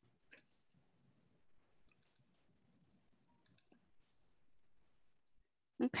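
A few faint, scattered clicks over quiet room tone.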